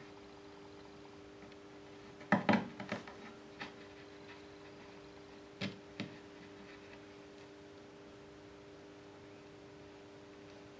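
A few light clicks and taps as thin metal wires are handled against a wooden workbench: a short cluster about two and a half seconds in, one a second later, and two more about five and a half to six seconds in. A steady low hum runs underneath.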